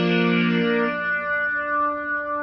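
Yamaha portable keyboard playing a melody in sustained notes: a held chord stops under a second in, and a single higher note is held after it.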